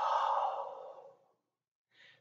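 A man's long breathy exhale through the mouth, a sigh that fades away about a second in, taken on releasing a yoga pose.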